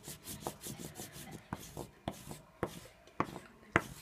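A block of Howie's hockey stick wax rubbed back and forth over white cloth tape on a hockey stick blade: quick rubbing strokes with a few sharper ticks in between.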